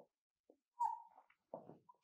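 Dry-erase marker on a whiteboard drawing short dashes: a few brief strokes, with a short high squeak about a second in.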